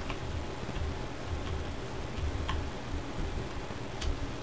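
A few faint, irregularly spaced clicks over a steady low rumble of room noise.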